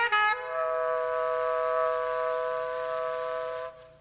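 Tenor saxophone playing alone: a few quick notes, then one long held note of about three seconds that stops shortly before the next phrase.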